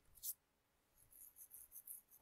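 Near silence: room tone, with one faint short click about a quarter second in, typical of a computer key or mouse button.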